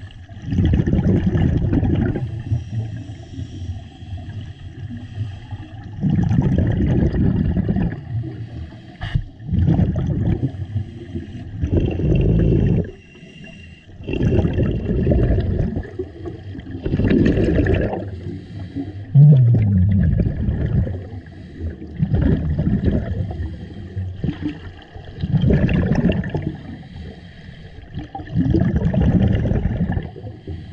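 Scuba diver breathing through a regulator underwater: a gurgling rush of exhaust bubbles every few seconds, each lasting one to two seconds, with quieter stretches between breaths.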